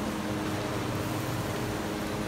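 Steady mechanical hum and hiss of kitchen background noise, with no clinks or knocks from the pans.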